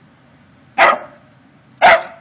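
Small black terrier barking twice, two short barks about a second apart, alert barks at a deer in the yard.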